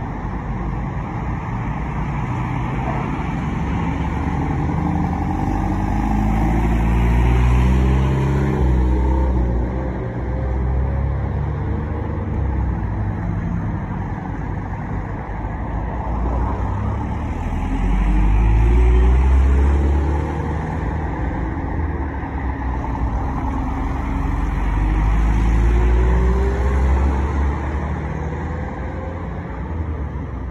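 A convoy of trucks and SUVs driving past one after another, their engines rising in pitch as they accelerate. The sound swells three times as the heavier vehicles go by.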